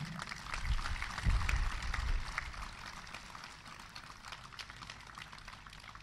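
Audience applauding, the clapping thinning out and fading over several seconds. A low rumble sounds about a second in.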